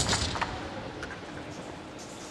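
Competition-hall noise dying away after a lift, with a faint knock about half a second in.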